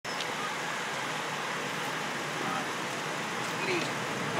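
Steady roadside background hiss with faint voices of people talking now and then.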